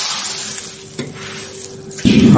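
Water poured into a hot, oiled wok sizzling hard over dry-fried white peppercorns, the hiss fading as the wok cools toward a boil. A single knock about a second in, over a faint steady hum.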